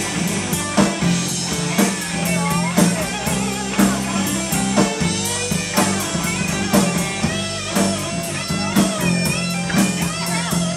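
Live rock band playing: electric guitar over bass guitar and a drum kit, with a steady beat.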